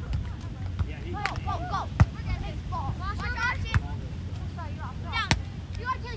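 Beach volleyball rally: three sharp slaps of hands and forearms on the ball, the loudest about two seconds in, over background voices and a low outdoor rumble.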